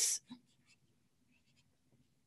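Faint, short strokes of a felt-tip marker writing on paper.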